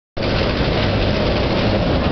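Loud, steady rumbling noise in an enclosed pedestrian underpass, with a faint steady hum, starting abruptly at the very start.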